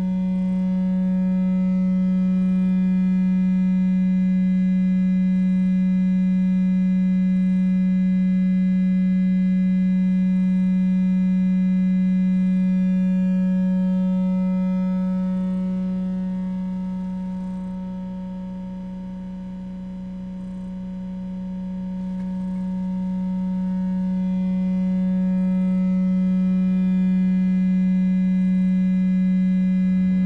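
Electronic drone oscillator holding one steady low tone, with fainter steady overtones above it. The tone fades down about two-thirds of the way through and swells back up near the end.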